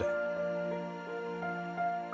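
Background music: slow held notes over a steady low drone, the notes changing every half second or so.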